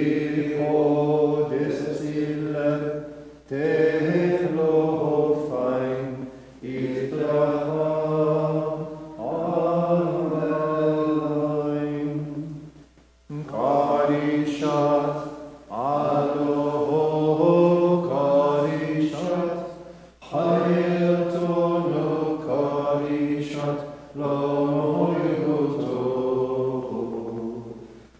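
A man's voice chanting Maronite liturgical chant unaccompanied, in long held phrases a few seconds each, with short breath breaks between them.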